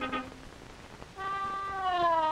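Early sound-cartoon score: a phrase of quick repeated brass notes ends just after the start, a short pause follows, and about a second in a single held note begins that slides down in pitch near the end.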